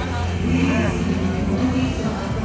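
Live music played loud through a hall sound system: a steady deep bass note under a singing voice.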